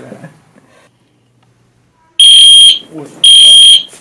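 Fire alarm sounding in loud pulses of a single high tone, about half a second on and half a second off, starting about two seconds in; the alarm has been pulled to make the group leave.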